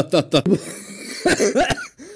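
A man's speech breaks off into a breathy pause. Then he gives a sharp cough and a short laugh near the end.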